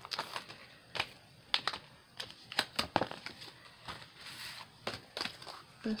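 Clear plastic packaging crinkling and crackling as it is handled and a die set is pulled out of its sleeve, in irregular short sharp crackles.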